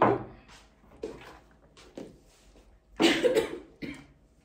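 A person coughing, in short bursts: one at the start and a louder one about three seconds in, with a couple of small sounds between.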